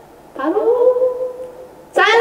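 A woman's voice humming one drawn-out note that glides up, holds steady for over a second and fades away near the end, a teasing build-up before a name is called out.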